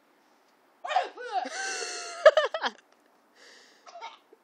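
A person's loud whooping yell that rises, holds a steady pitch for about a second and breaks into a few short bursts, the loudest near the end of the yell. A quieter breathy rush follows shortly before the end.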